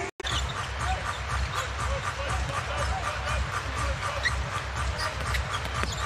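Basketball arena game sound: crowd noise over a low, evenly pulsing beat from the arena's music, with short scattered squeaks and knocks from play on the court.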